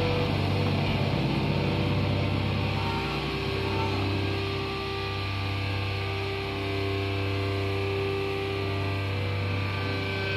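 Loud, distorted live grindcore band sound that breaks off about three seconds in, leaving the amplifiers droning: steady sustained guitar and bass notes over a low electrical hum.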